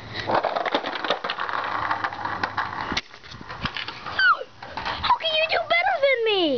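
Skateboard wheels rolling over a concrete sidewalk for about three seconds, with a click at each pavement joint. In the last two seconds a kid's voice makes short wordless calls that slide up and down in pitch.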